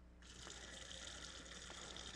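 Faint, steady trickle of water being poured into a jar of dry clay powder to mix clay mud, starting about a quarter second in.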